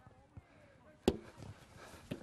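A football caught in a goalkeeper's gloved hands: one sharp slap about a second in, with faint voices across the field.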